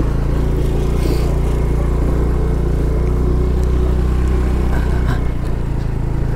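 Small motor scooter's engine running steadily while it is ridden along a dirt road, with road and wind noise over it; it eases off slightly near the end.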